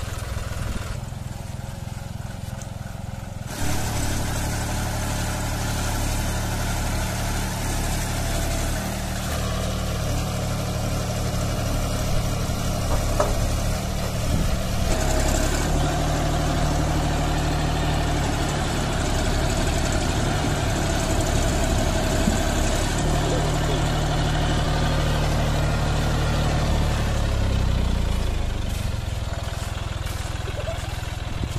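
A John Deere 5310 tractor's three-cylinder diesel engine running under load as it works through loose river sand. Its note rises about halfway through and drops back near the end.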